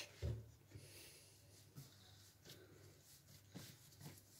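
Near silence, with a soft low thump early on and a few faint rubbing sounds of hands handling a ball of soft dough on a floured counter.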